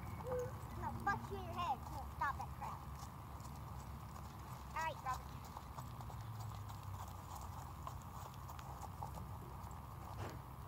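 A horse's hoofbeats as it moves across a grass field, under a steady low rumble. A few short rising calls stand out, between about one and three seconds in and again about five seconds in.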